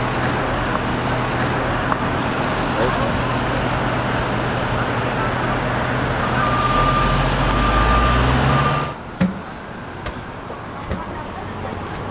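City street traffic with a vehicle engine running close by as a steady low hum. It drops off sharply about nine seconds in, leaving quieter street noise with a few light knocks.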